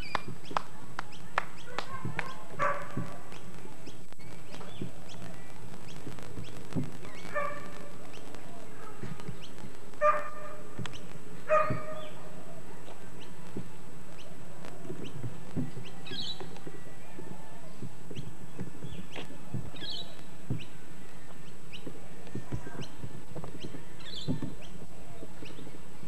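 A dog barking now and then, the two loudest barks about ten and eleven and a half seconds in. Short, high bird calls come in the second half.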